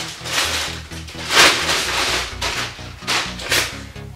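Clear plastic bag crinkling in several bursts as a tripod is pulled out of it, over background music.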